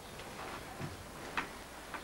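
A few faint, irregularly spaced small clicks and rustles, about four in two seconds, over quiet room tone.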